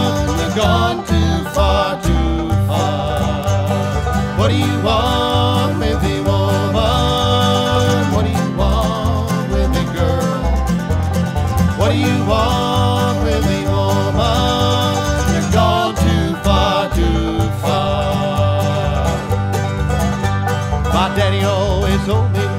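Bluegrass band playing an instrumental break between sung verses, with banjo and guitar.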